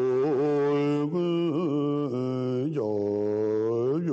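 A low male voice chanting a Buddhist prayer or mantra without a break, holding long notes on a steady low pitch and moving to a new note every second or so.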